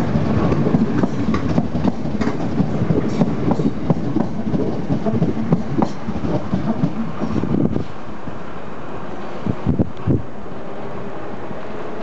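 A Southeastern Networker electric train (a Class 465 with a Class 466 unit at the rear) running close by as it departs, with a low rumble and rapid clicking of wheels over rail joints. The sound drops away about eight seconds in as the last coach passes, and a few last separate wheel knocks follow a couple of seconds later.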